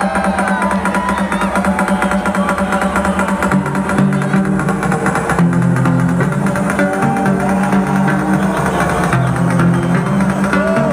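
Loud electronic dance music from a live DJ set over a festival sound system, with a fast steady beat and stepped bass notes. The bass grows deeper about three and a half seconds in, and gliding synth or vocal lines sound above it.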